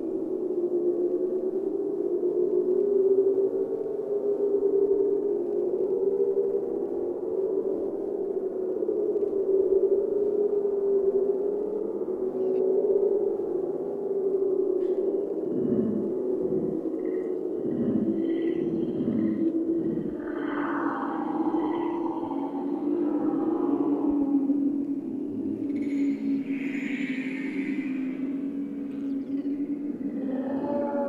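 Ambient drone soundtrack: a steady, wavering low hum runs throughout. Short falling swoops join it near the middle, higher gliding tones follow, and a brighter swell comes near the end.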